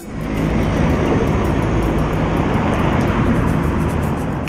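Urban road traffic: cars and a city bus driving past, a steady rush of engine and tyre noise that fades in over the first half second.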